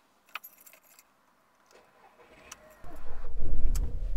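Car keys jingling and clicking in the ignition, then the car's engine turns over and starts about three seconds in, settling into a loud, steady low running sound.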